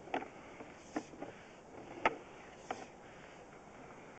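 A sewer camera's push cable being reeled back by hand, with about five irregular soft clicks and knocks over a steady low hiss.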